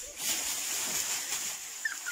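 Dry straw stalks rustling and crackling as a child is lifted and set down on a pile of them, with a few faint short chirps near the end.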